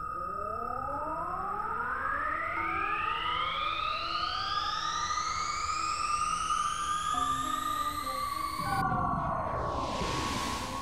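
Electronic sci-fi UFO sound effect: a steady high synthesized tone with several tones gliding upward together, then a rushing noise with falling tones about nine seconds in.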